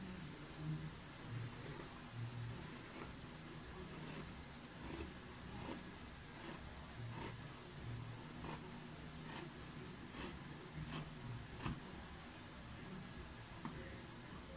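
Scissors snipping through fabric folded in four layers, cutting along a curved pattern line: a faint series of short snips at about one a second.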